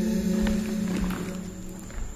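Unaccompanied choir singing a held note that thins and fades through the second half, trailing into a brief lull at a phrase end.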